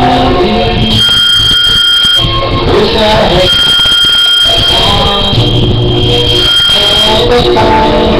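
Karaoke backing track playing loudly through home speakers, with a steady piercing high tone that comes in three times for a second or so each, like an alarm beep.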